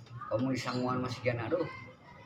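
A man's voice speaking in conversation.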